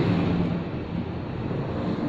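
Steady background noise, an even rumble and hiss with no clear pitch, during a short pause in the talk.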